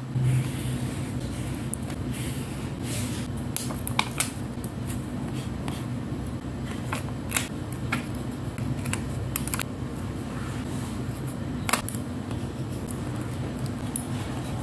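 Paper stickers handled with fine metal tweezers on a spiral journal page: scattered sharp clicks and taps, with light paper scratching, over a steady low hum.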